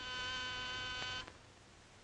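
Office desk buzzer giving one steady electric buzz lasting a little over a second, signalling an incoming call.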